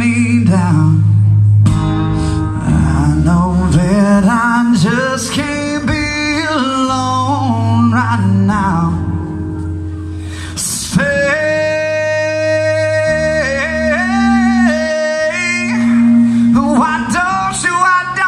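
A man singing live to his own strummed steel-string acoustic guitar, holding one long note a little past the middle.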